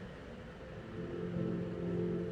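Soft, sustained ambient music from the Pranayama breathing app, played to pace a breath; a low held tone comes in about a second in.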